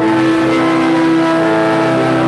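Church organ holding one sustained chord.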